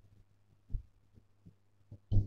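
Soft, low thumps against an otherwise quiet background: one louder thump about three quarters of a second in, then three fainter ones.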